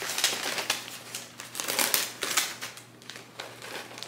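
Brown kraft wrapping paper being pulled open and lifted off a large parcel, crinkling and rustling in irregular bursts, dying down for a moment near the end.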